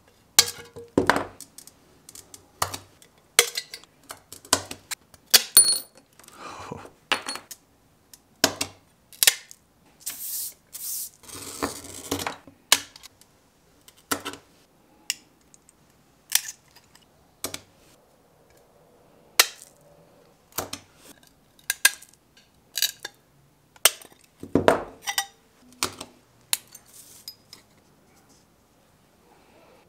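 Stained glass being cut and handled: an irregular run of sharp clicks, snaps and clinks as glass pieces are broken off with pliers and set down on the board. About ten seconds in, a scratchy hiss lasting a couple of seconds, typical of a glass cutter scoring a line.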